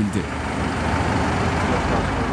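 A bus engine running at idle, a steady noise with street background and faint voices.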